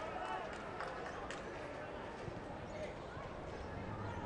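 Football-stadium ambience from a sparse crowd: a steady low murmur with faint distant shouts, and a couple of short sharp knocks about a second in.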